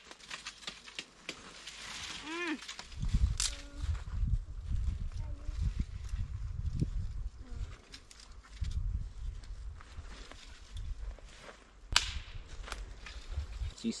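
Leafy branches rustling and twigs snapping as branches are picked up and propped against a tree trunk, over a low rumble of wind buffeting the microphone. There is a sharp snap near the end.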